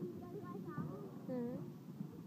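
Indistinct voices of several people talking and calling out, some high-pitched, over a steady low background din.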